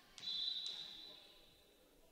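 Referee's whistle giving one short blast to authorize the serve. Its high, steady tone starts about a fifth of a second in and fades out slowly in the gym's echo.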